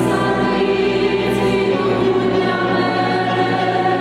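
A woman singing long held notes into a microphone, with instrumental ensemble accompaniment.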